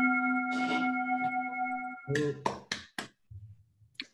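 A steady ringing tone with several overtones that stops suddenly about halfway through. It is followed by a brief voice and four quick, sharp clicks.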